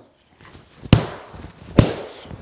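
Wooden baseball bat smashing down: two heavy whacks, about a second in and again near the end, each with a short ringing tail.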